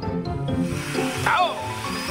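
Cartoon background music, with a hissing sound effect over the first second or so, then a short wavering vocal sound.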